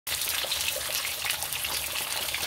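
Whole sea bream frying in hot oil in a pan: a steady sizzling hiss dotted with many small crackles.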